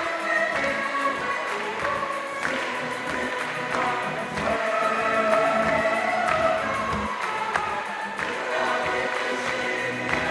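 A large choir singing a sacred song, many voices holding chords together over music.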